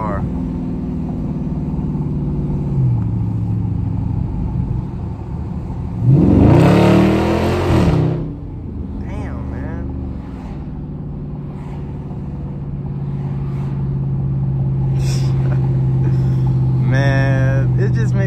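Dodge Charger Scat Pack's 392 (6.4 L) HEMI V8 heard from inside the cabin, cruising steadily, then about six seconds in a brief full-throttle burst of about two seconds with the exhaust pitch rising and falling, before settling back to a steady cruise.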